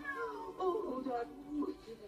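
Cartoon Siamese cats meowing and yowling on the film's soundtrack, played through the TV speakers: a run of wavering, gliding calls.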